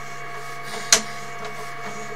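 Steady electrical hum and whine from the sewer inspection camera system while the camera is pulled back through the pipe, with one sharp click a little under a second in.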